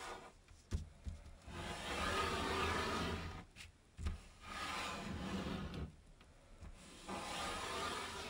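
A sheet of origami paper rustling and sliding against a tabletop as hands handle and fold it, in three stretches of a second or two, with a light knock on the table near the start and another about halfway through.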